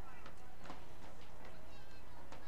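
Distant players' shouts and calls across an open soccer pitch, faint and pitched, with a few faint knocks, over a steady low rumble of field ambience.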